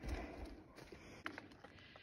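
Faint footsteps on a rocky trail: a few light scuffs and sharp clicks of boots on stone, after a low thump at the start.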